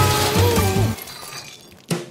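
A crash-like effect with a bright hiss over the closing notes of a children's song, fading out over about a second and a half, then a single sharp click near the end.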